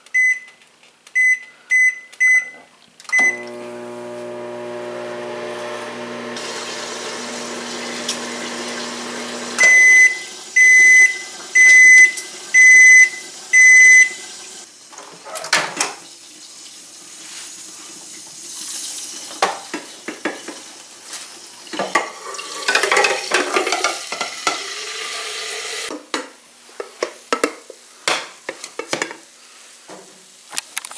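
A 700-watt Rival microwave's keypad beeps five times as buttons are pressed, then the oven runs with a steady hum. About ten seconds in the hum stops and five long, louder beeps follow, signalling that the cooking cycle is done. After that come irregular knocks and clatter of the door and a dish being handled.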